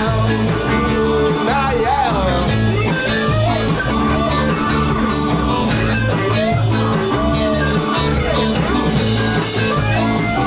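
A live rock-and-roll band playing, with electric guitars, bass and drums under a male lead singer.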